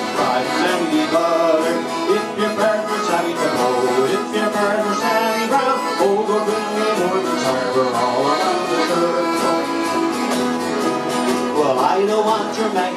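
Piano accordion playing an instrumental break in an old country-folk song, with acoustic guitars strumming a steady beat and a harmonica joining in.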